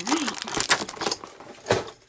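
Small plastic bag crinkling as it is handled, with light clicks of small plastic toy pieces and one sharper click near the end.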